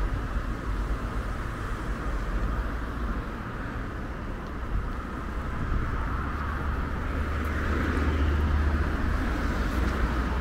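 Road traffic: cars driving past on a city street with steady tyre and engine noise, growing louder near the end as a car passes close by.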